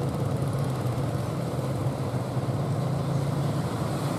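A fishing boat's engine running with a steady low drone, under a constant hiss.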